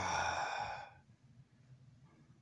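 A loud, breathy, voiced sigh, 'ugh', falling in pitch and fading out about a second in, followed by quiet room tone.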